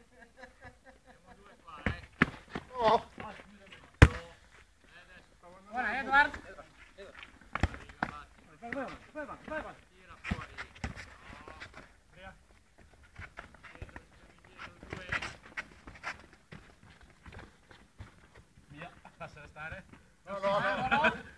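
Players calling out and shouting during a five-a-side football game, with several sharp thuds of the ball being kicked; the loudest kick comes about four seconds in.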